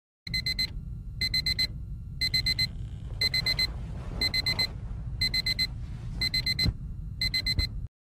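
Electronic alarm beeping in quick groups of four, about one group a second, over a steady low rumble, with a rustle of bedding around the middle. The beeping stops suddenly just before the end.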